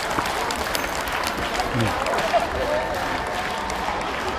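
Spectators applauding: many quick, scattered hand claps, steady throughout, over the chatter of a crowd.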